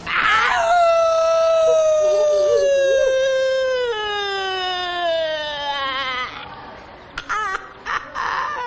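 A high-pitched voice holding one long, loud cry for about six seconds, its pitch sliding slowly down with a small drop about four seconds in, and wavering just before it stops.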